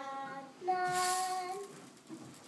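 Children singing two long held notes, the second one higher.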